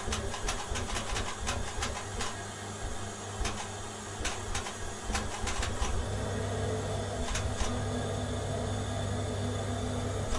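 Diesel boiler burner running with a steady hum and irregular clicking, becoming steadier about halfway through, as it tries to fire while fuel is not reaching the burner after the tank ran dry.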